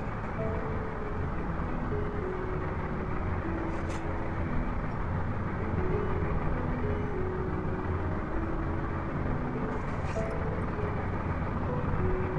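A steady background hum and hiss, with faint background music of short held notes at changing pitches.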